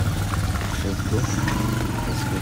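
An engine running steadily with a low hum.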